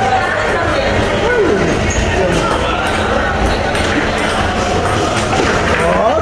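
Chatter of several voices in a large room, with occasional light clacks from a foosball table being played.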